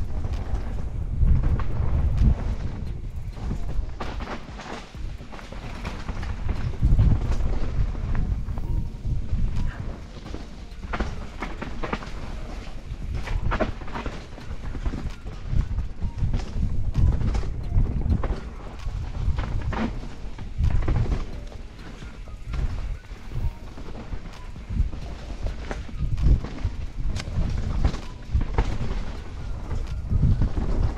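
Helmet-camera sound of a Scott Genius full-suspension mountain bike descending rough forest singletrack: a continuous low rumble of tyres on dirt and leaves, broken by frequent irregular knocks and rattles as the bike hits roots and stones.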